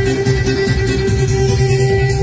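Live Bosnian folk (narodna) music played loud through a PA, in an instrumental passage with no singing: a long held high note over quick plucked notes and a steady bass beat.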